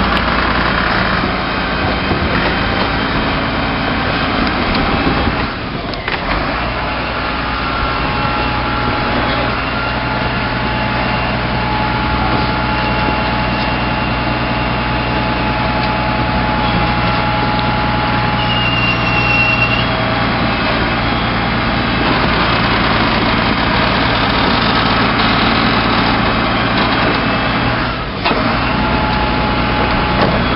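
Rear-loading refuse truck running steadily at the back, with its bin-lift hydraulics raising and tipping a large wheeled bin. A short high squeal comes a little past the middle.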